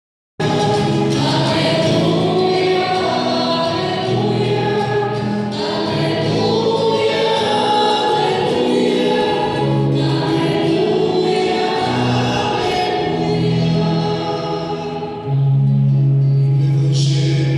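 Choir singing a church hymn in long held notes. About a second before the end a louder low steady note comes in.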